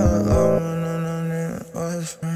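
Playback of a hip-hop beat in a phone recording app: sustained synth chords over deep bass hits that slide down in pitch. The music dips briefly near the end.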